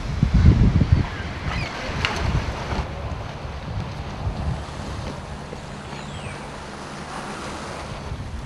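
Wind buffeting an outdoor microphone, gusting hardest in the first second, then settling into a steady rush of seaside wind and sea.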